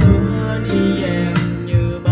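Male voice singing a Vietnamese pop song over a guitar accompaniment, holding and bending sustained notes.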